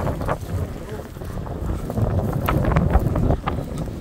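Wind buffeting a phone microphone, with footsteps swishing through long dry grass.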